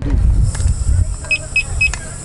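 Three short high-pitched beeps about a quarter second apart from a firefighter's SCBA electronics as the air cylinder's valve is worked. They come over a steady hiss and a low rumble.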